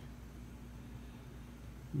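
Quiet room tone: a faint steady hiss with a low hum underneath.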